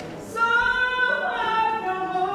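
A woman singing a gospel song unaccompanied, with long held notes. A new, louder note begins about half a second in.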